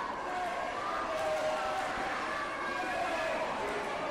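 Spectators' voices talking and calling out over one another in a steady crowd chatter.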